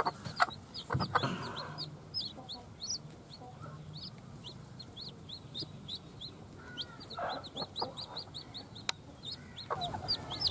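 Newly hatched chicks peeping: a rapid, continuous run of short, falling cheeps, several a second. A hen clucks low underneath now and then, and there is one sharp click near the end.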